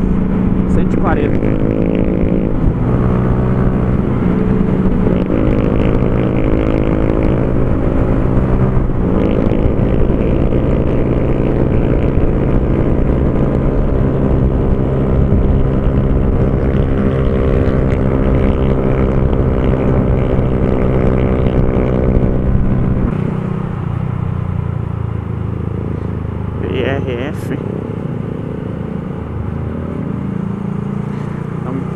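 Honda CG Fan 150's single-cylinder four-stroke engine running at steady high revs through an aftermarket Torbal Racing exhaust, heard from the rider's seat. About 23 seconds in, the engine note drops lower and quieter.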